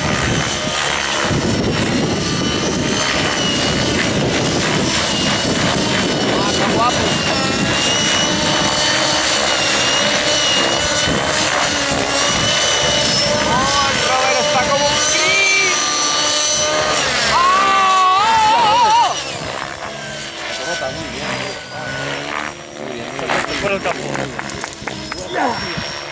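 Radio-controlled model helicopters flying, their engines and rotors making a steady high-pitched whine that bends up and down in pitch as they manoeuvre. The sound drops to a quieter, uneven level about three-quarters of the way through as they move off.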